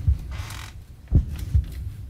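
Heartbeat sound effect: deep double thumps, one pair about every one and a half seconds, laid under the scene for suspense.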